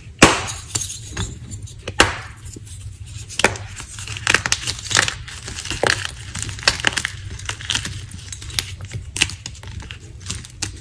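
Blocks of gym chalk being squeezed and crumbled in bare hands, with chunks and grit falling back onto a pile of broken chalk: a continuous run of sharp crunches and small clinking crackles, loudest just after the start and again at about two seconds.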